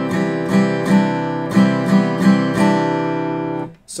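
Takamine TSF48C acoustic guitar played in steady downstrokes through a C major chord shape, about eight strokes with the melody note on top changing, then stopping just before the end. The open high E string is muted by the fretting fingers, so it does not ring and the melody notes stand out.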